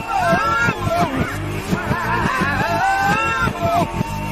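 A pop-rock song played backwards: a reversed vocal line whose notes swell and glide strangely over a steady, reversed drum beat.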